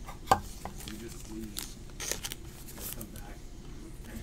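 Trading cards being handled and set down on a table: one sharp tap near the start, then a string of light clicks and ticks.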